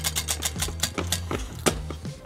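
Prize wheel spinning down, its pointer flapper clicking against the pegs: fast ticks that slow and spread out as the wheel coasts to a stop.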